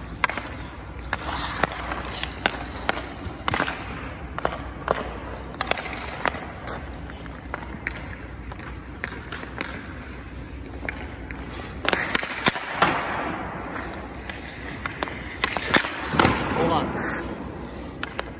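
Ice hockey shooting drill: repeated sharp clacks of a hockey stick hitting pucks, with skates and sticks scraping on the ice.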